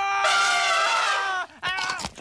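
A man's long, steady-pitched scream as an elephant's trunk grabs him. It cuts off about a second and a half in, and a few short sounds follow.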